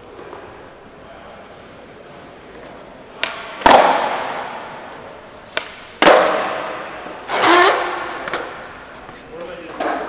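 Skateboard flip tricks on a flat concrete floor: twice a sharp tail pop followed about half a second later by a loud board landing, each ringing out in a large hall. About a second after the second landing there is a brief shout from onlookers.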